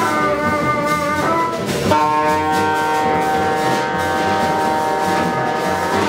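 Free-jazz quartet of alto saxophone, bassoon, double bass and drums playing. The horns hold long notes, shifting pitch about two seconds in and then sustaining.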